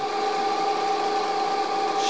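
Electric drive motor spinning a 0.75 kW water-pump motor used as a generator, with a 9 kg flywheel, running at a steady speed: a constant whine made of several steady tones over a faint mechanical hiss. The generator is under load, lighting a bank of bulbs.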